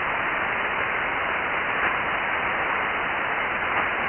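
Steady static hiss from an Icom transceiver's receiver tuned to the RS-44 satellite downlink, with the channel open and no station answering the call.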